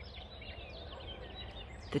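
Small birds chirping faintly, with many short rising and falling calls, over a low steady outdoor rumble.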